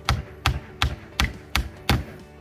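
Hammer nailing at a window frame: six sharp, evenly spaced blows, about three a second.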